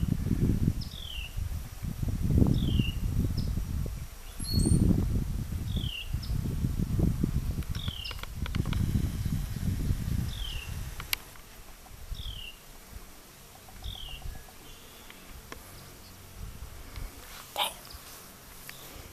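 A bird repeats a short chirp that falls in pitch, once every second or two. Under it, a loud, irregular low rumbling on the microphone fills roughly the first ten seconds, then dies down.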